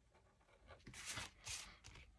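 Two faint papery swishes about a second in, from card stock being turned on a cutting mat and the nib of an alcohol marker being drawn along it.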